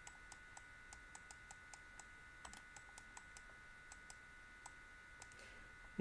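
Faint, irregular clicks, about three or four a second, from a computer mouse button pressed and released stroke by stroke as handwriting is drawn on screen. A faint steady electronic whine sits underneath.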